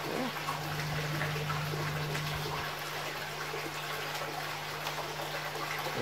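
Water moving and trickling in a tub around a fish held in the hands, over a steady low hum.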